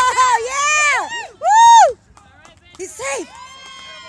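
Spectators yelling and cheering in high, excited voices: a run of short shouts, the loudest about a second and a half in, then one long drawn-out call near the end.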